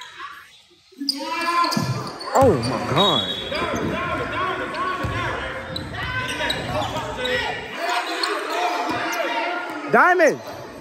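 Basketball being dribbled on a hardwood gym floor, with sneakers squeaking and players' voices echoing in a large gym. It is quiet for about the first second, then play starts up.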